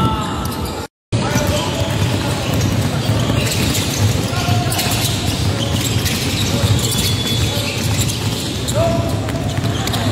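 Busy basketball gym: balls bouncing on the hardwood floor amid voices and many short sharp knocks and footfalls. The sound cuts out completely for a moment about a second in.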